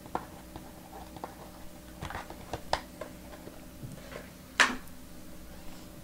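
Faint scattered clicks and light taps, with one sharper tap a little past the middle, over a steady low hum.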